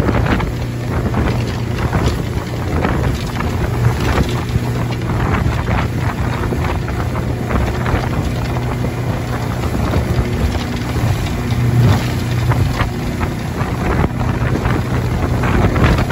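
Motorboat running at speed over open water: the engine's steady low drone under wind buffeting the microphone, with repeated splashes of spray and slaps of the hull on the waves.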